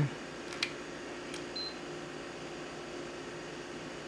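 Steady faint hiss and hum of a MacBook Pro Retina running hot under a full load, its cooling fans spinning. Two light clicks and a brief high beep within the first two seconds come from an infrared thermometer being triggered as it is aimed at the laptop's underside.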